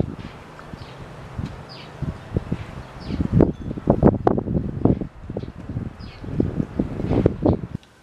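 Wind buffeting the microphone in uneven gusts, a low irregular rumble that rises and falls, with a few faint short high chirps now and then.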